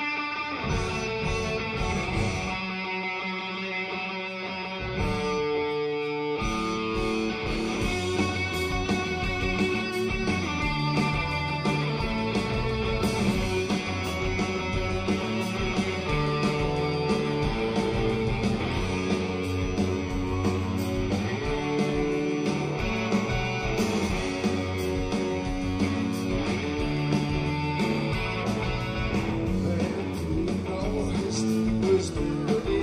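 Live rock band playing: electric guitars over drums. The band fills out with heavier low end about six seconds in.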